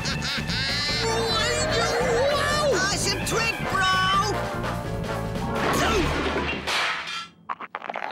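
Cartoon soundtrack of lively music and sound effects with a character laughing, ending about seven seconds in with a few sharp crash impacts as the rat-board rider slams into a wall.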